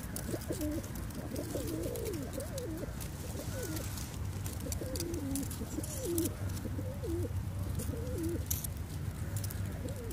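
A flock of feral pigeons cooing, many rolling coos overlapping one after another, with light clicks scattered through.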